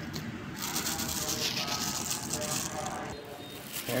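Thin clear plastic bag crinkling and rustling as it is handled, starting about half a second in and stopping abruptly a little after three seconds.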